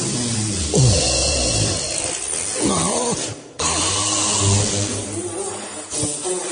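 Distorted noise passage from a goregrind demo recording, full of sliding pitch sweeps that fall and rise again and again, with a brief drop-out a little past halfway.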